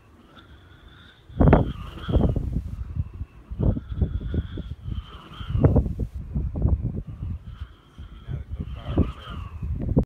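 Strong gusty wind buffeting the microphone in repeated loud, uneven blasts, the first about a second and a half in.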